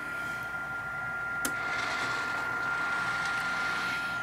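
Model train running on the layout track: a steady rolling hiss under a thin steady high tone, with one short click about a second and a half in.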